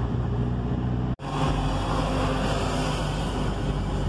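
Steady engine hum and road noise of a car driving along a highway, heard from inside the cabin. There is a brief sudden drop-out of the audio about a second in.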